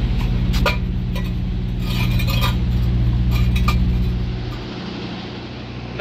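Aluminium wheel chock on a steel cable clinking and scraping against concrete as it is set at a semi-trailer's tyre, several sharp metallic clinks over the first four seconds. Underneath, the steady low hum of an idling truck engine, which fades away about four and a half seconds in.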